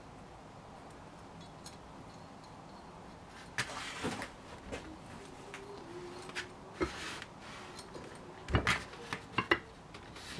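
Scattered light metal clicks and knocks as a retaining ring and wire spring clip are worked onto a cast-iron brake caliper by hand. They start a few seconds in, and the loudest comes near the end.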